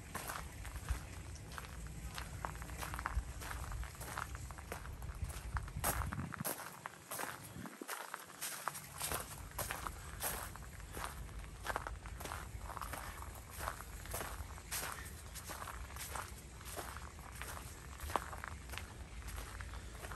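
Footsteps of a person walking at a steady pace on a bark-chip mulch path, about two steps a second.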